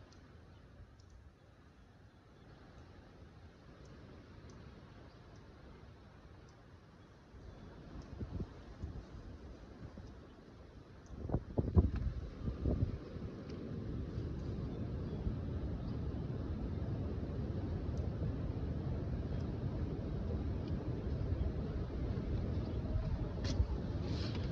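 Wind buffeting the microphone outdoors: faint at first, building into a low, irregular rumble with strong gusts a little before halfway, then a steadier rumble.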